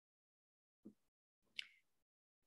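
Near silence, broken by a faint soft sound just before the middle and a brief faint click about one and a half seconds in.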